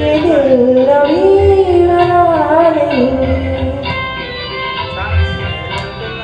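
A woman singing a slow Indian film-style melody into a microphone, holding long notes and sliding between them, over an instrumental accompaniment with a low drum beat.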